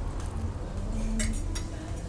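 Metal fork clinking lightly against a plate, two small clinks a little over a second in, over a steady low rumble.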